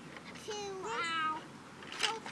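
A young child's high-pitched voice: one drawn-out, wordless call about a second long, rising and then falling in pitch, with a sharp click at the very end.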